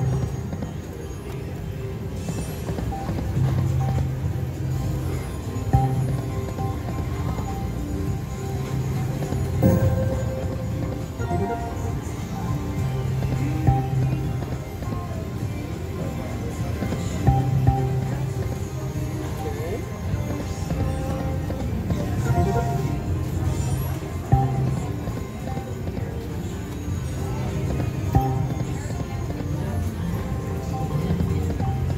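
Lock It Link Diamonds slot machine playing its game music and spin sound effects through repeated base-game spins, with short louder accents every few seconds over a steady musical bed.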